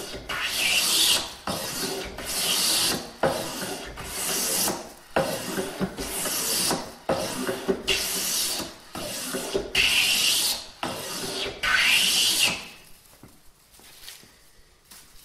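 Metal bench plane shaving wood in repeated strokes, about one a second, stopping near the end.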